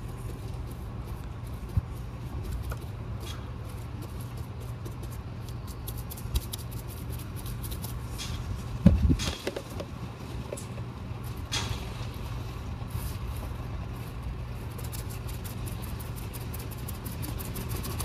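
Steady low background rumble under soft dabbing of a resin-wet chip brush on fiberglass mat, with a few light knocks, the loudest about nine seconds in.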